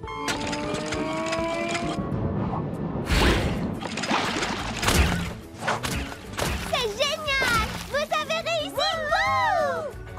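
Cartoon soundtrack: background music with two sudden impact sound effects about three and five seconds in. Near the end come high, sliding exclamations that rise and fall.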